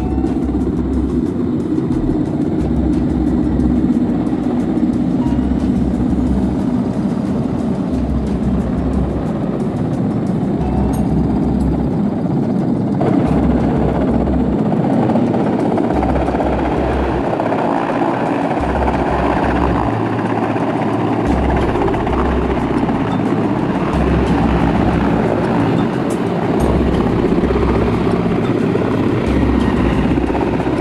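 Large military helicopter's rotor and turbine engines running loud and steady as it approaches and descends to land. Rotor downwash buffets the microphone in irregular deep rumbles.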